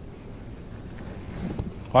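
Steady low wind and water noise around a small boat on open water, with no distinct event.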